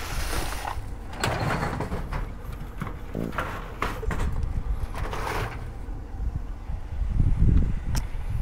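Pens, markers and plastic bags clattering and crinkling as a hand rummages through a metal file-cabinet drawer, with the drawer sliding on its runners. A louder low bump comes near the end.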